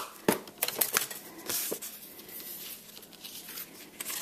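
Cardstock and patterned paper being handled on a craft mat: a few sharp taps in the first second, then a spell of paper sliding and rustling.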